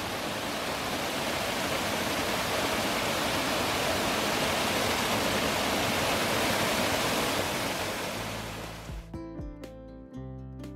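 Small waterfall pouring onto rocks into a shallow pool: a loud, steady rush of water. Near the end it fades out and music with plucked notes comes in.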